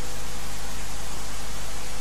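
A steady hiss of recording noise, fairly loud, with a faint steady tone and a low hum under it.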